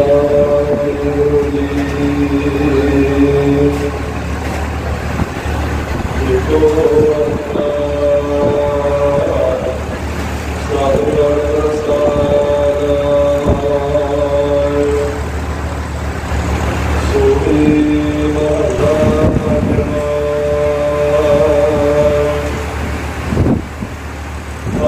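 A man's voice chanting through a PA microphone in four long, drawn-out sung phrases with short breaks between them, over a steady low hum.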